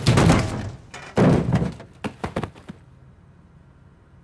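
A car striking a woman: heavy thuds of her body landing on the hood and windshield of a Chrysler Sebring, a second heavy thud about a second later, then a couple of lighter knocks.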